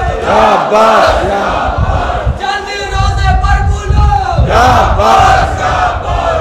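A loud crowd of men chanting and shouting slogans in unison. There are rising-and-falling shouted calls near the start and again about three-quarters of the way through, with a steadier held chant in between.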